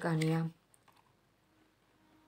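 A woman speaking for half a second, then near silence with one faint click.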